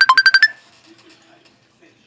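A rapid run of short electronic beeps at two steady pitches, like a phone ringtone or alert, cutting off about half a second in. The rest is quiet room tone.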